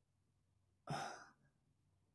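A single short breath close on the microphone, about a second in; the rest is near silence.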